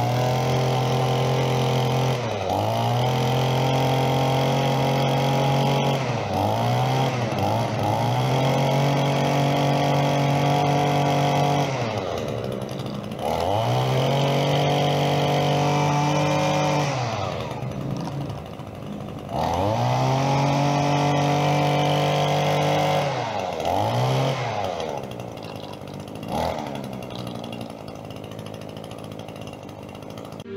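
Two-stroke gas string trimmer engine being run up: it is revved to full throttle and held for a few seconds, then let fall back to idle, over and over, with quick throttle blips in between. It settles to a lower idle near the end.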